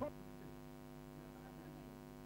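Faint, steady electrical mains hum with no speech over it, and a short blip at the very start.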